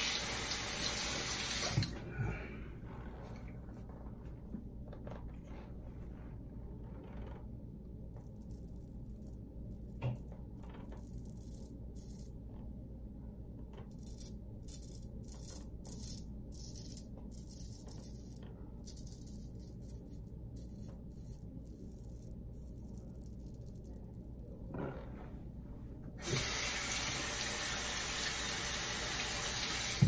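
Water running from a sink tap for about two seconds, then a quieter stretch of short, scattered scrapes as a shavette blade is drawn across lathered stubble, and the tap running again for the last few seconds.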